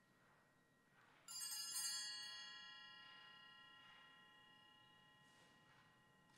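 Altar bells rung at the elevation of the host: a faint earlier ring is still sounding, then a sharp strike about a second in, a cluster of high bell tones that ring on and slowly fade. The ringing marks the showing of the consecrated host to the congregation.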